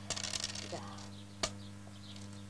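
Backgammon dice and checkers clattering on a wooden board: a brief rattle, then one sharp click about one and a half seconds in. A steady low hum from the film's soundtrack runs underneath.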